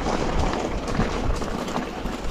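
Bicycle tyres rolling over a loose gravel track, a steady crunching noise with wind on the microphone.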